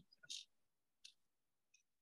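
Near silence, broken by a brief faint hiss-like sound near the start and a faint click about a second in.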